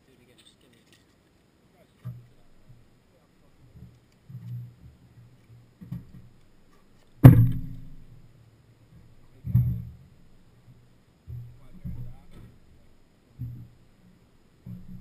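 A sharp thump about seven seconds in, the loudest sound, and a second, weaker thump about two seconds later. Between them come quieter, muffled low knocks and rumbles.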